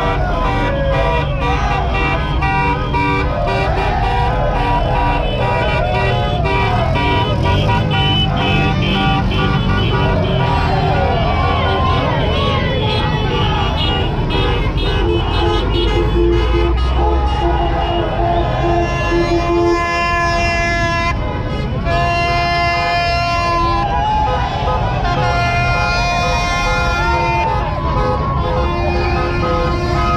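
Car horns honking in long, overlapping blasts over a shouting crowd and slow-moving traffic; the held horn notes are strongest in the second half.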